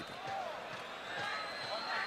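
Football stadium crowd in the background of a TV match broadcast: a general hum of fan voices with scattered faint shouts and low thuds.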